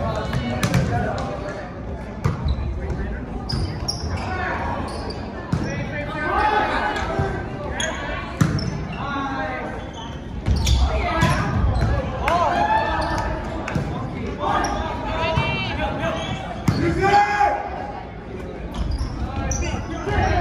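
A volleyball being bounced on a hardwood gym floor before the serve, then struck again and again through a rally: sharp slaps of hands on the ball, ringing in a large gym. Players and spectators shout throughout.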